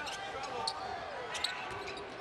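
Basketball arena during live play: steady crowd murmur and scattered voices, with two sharp knocks, about two-thirds of a second and a second and a half in, from the ball bouncing on the hardwood court.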